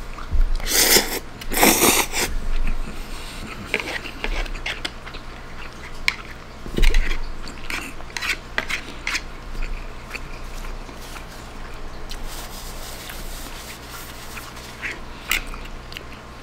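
A person eating spaghetti peperoncino: noodles slurped loudly twice in quick succession near the start, then chewing and a plastic fork clicking and scraping against the bowl.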